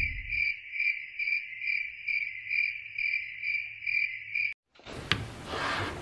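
Cricket chirping, an even high-pitched pulse about twice a second, cutting off sharply about four and a half seconds in; the stock crickets sound effect laid over the end of a clip. After a moment of silence comes the faint hiss of a room recording with a couple of light clicks.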